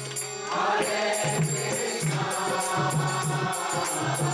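Congregation singing a kirtan chant together in response, joining in about half a second in, over a harmonium with a steady drum beat and small cymbals.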